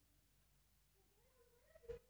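Near silence, with a faint, wavering, drawn-out call in the background over the second half and a soft click just before the end.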